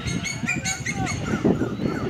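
A quick run of short, high bird chirps in the first second, over distant voices and a low rumble.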